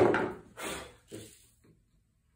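A single sharp wooden knock with a brief ring, as a glue-coated beech dowel is tapped into a chair spindle to repair the break.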